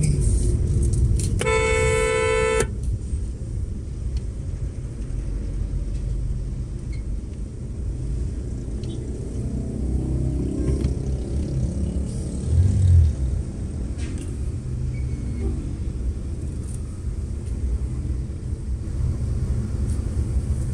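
Steady low engine and road rumble heard from inside a car's cabin in slow city traffic. A single car horn blast starts about a second and a half in and lasts just over a second. A short, louder low rumble swells up about two-thirds of the way through.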